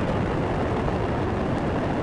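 Space Shuttle Atlantis's solid rocket boosters and main engines during ascent: a steady, noisy rocket roar.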